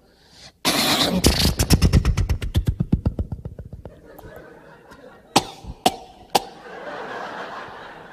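Piston airplane engine sputtering after a start attempt: a burst of firing that slows and dies away, then three sharp backfires about half a second apart. The engine is coughing and will not keep running.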